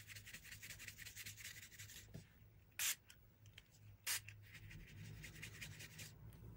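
Paintbrush bristles scrubbing across dampened linen fabric, faint and scratchy. There are rapid short strokes for the first couple of seconds, then two brief louder swishes about a second apart, then softer brushing.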